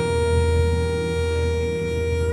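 Harmonica holding one long steady note over a low, sustained band accompaniment.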